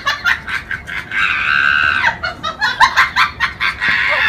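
High-pitched cackling laughter in quick bursts, with a held squeal from about one to two seconds in.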